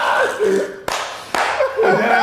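Two sharp hand claps, about half a second apart.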